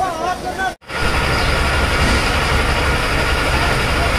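Voices briefly. Then, after a sudden cut, a fire engine's diesel engine runs steadily and loudly with a deep, even rumble.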